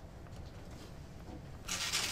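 A tablet stylus rubbing across the screen in handwriting, heard as one short scratchy stroke near the end, over a low steady hum.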